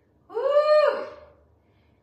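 A cat meowing once, a single call that rises and then falls in pitch, lasting under a second.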